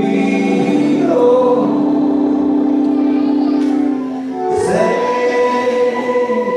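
Congregation singing a gospel song in long held notes, with a short break about four seconds in before the next note.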